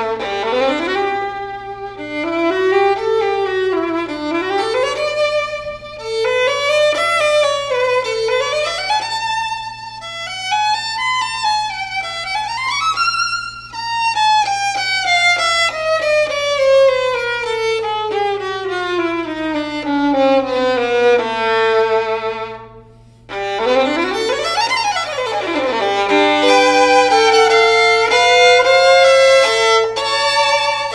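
A Fiddlerman Soloist violin played solo with the bow: flowing melodic runs that climb and fall, then a long descending passage through the middle. After a brief break about two-thirds through comes a quick slide up and back down, followed by longer held notes.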